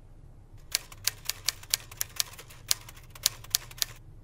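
Typewriter keys striking: about a dozen sharp clacks at an uneven typing pace, starting just under a second in. It is the sound of a line of text being typed out.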